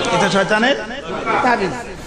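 Speech only: voices talking, trailing off near the end.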